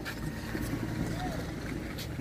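Wind buffeting the microphone outdoors, a steady low rumble, with a faint voice briefly about a second in.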